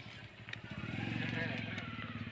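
A motor vehicle engine running with an even low pulse, getting louder about a second in, with faint voices behind it.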